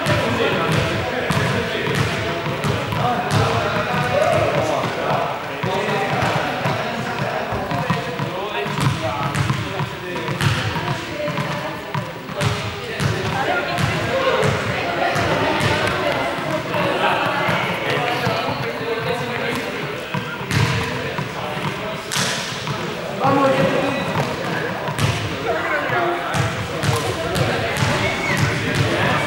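Several people talking and calling out at once in a large sports hall, with frequent thuds and knocks on the hard court floor.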